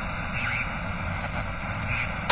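A steady low rumble of noise, with no distinct hits or tones.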